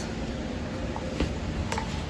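Quiet room background with a few faint, light clicks of wooden toy magnet pieces being put into a wooden box, two of them about a second apart near the middle and end.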